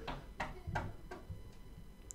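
Faint clicks of a computer mouse, a few of them about a third of a second apart in the first second or so, over quiet room tone.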